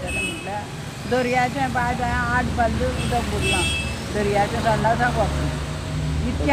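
Voices of people talking in the street, over a steady low rumble of road traffic.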